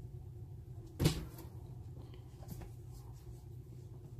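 A single sharp knock about a second in, over a steady low hum, followed by a couple of faint small ticks.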